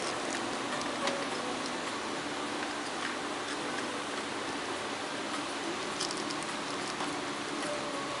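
Steady air-conditioning hiss with faint, scattered clicks and rustles of a plastic wire nut being twisted onto electrical wires, a small cluster of clicks about six seconds in.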